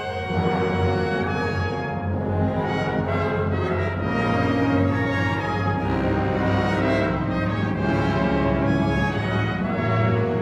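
Symphony orchestra playing, strings and brass together; the music swells about half a second in and stays loud.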